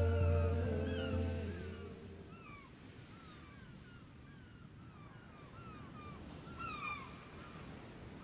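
Music fades out over the first couple of seconds, leaving a series of short bird calls, each a quick rising-then-falling chirp, repeated two or three times a second, with a louder cluster near the end.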